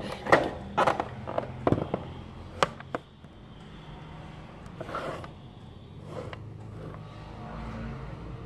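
Handling of a cardboard watch box: several sharp knocks and scrapes in the first three seconds, then softer rubbing, as the rigid inner case is pushed up out of its tight cardboard sleeve.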